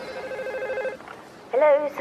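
A telephone ringing: one pulsing electronic ring about a second long. About half a second later a voice answers the call.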